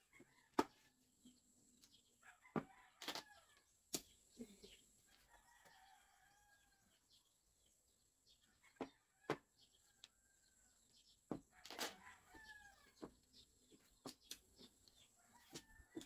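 Mahjong tiles clicking as they are drawn from the wall and set down on the table: scattered single sharp clacks, about a dozen, the loudest about half a second in and near four seconds. Faint pitched calls come and go in the background.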